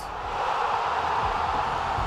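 A whoosh sound effect for an on-screen graphic transition: a steady rush of noise with no music or voice.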